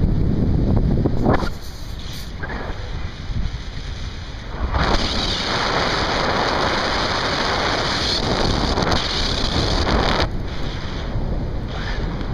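Wind buffeting a camera microphone during a paraglider flight: a low rumble throughout, louder for the first second or so, with a broader hissing rush of air from about five seconds in until about ten seconds.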